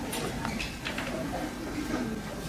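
A few light clinks of glass and bottle as a glass of whiskey and water is poured, heard about half a second and about a second in.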